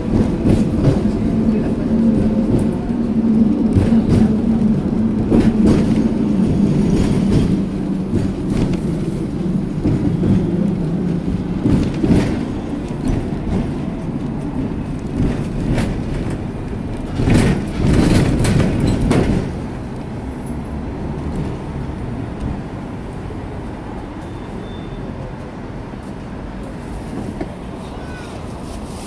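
Hong Kong double-decker tram running along its street track, heard from on board: a low motor hum with wheels clicking and rattling over the rails. About two-thirds of the way through comes a louder rattling spell of a couple of seconds, after which the running is quieter.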